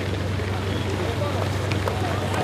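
Steady outdoor road-race ambience: a rushing, wind-like noise over a low steady engine hum, typical of the camera vehicle travelling just ahead of the runners, with faint voices in the background.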